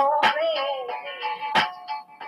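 Music playing back through a stereo's speakers in a small room: a wavering, gliding melody line over sharp drum hits, the strongest about a second and a half in.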